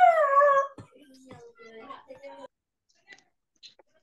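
A high-pitched whine that slides steadily down in pitch and ends about three-quarters of a second in. Faint murmured speech follows, and then it goes nearly quiet.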